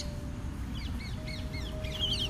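A bird calling in a quick run of short, gliding whistled notes, starting a little under a second in, over a steady low outdoor rumble.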